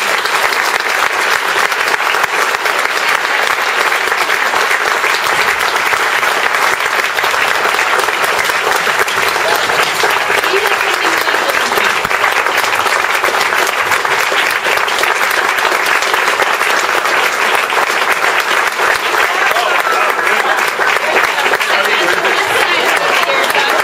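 Audience applauding in a long, steady round of clapping.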